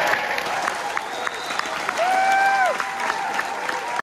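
Audience applauding and cheering at the close of a song. About two seconds in, a loud whistle from the crowd holds its pitch for about half a second and then drops away.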